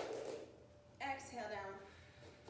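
A woman's voice speaking briefly about a second in. Right at the start there is a short, sharp, noisy sound that fades quickly.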